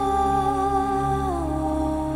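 Soft background music of sustained held tones, which step down to a lower chord about halfway through.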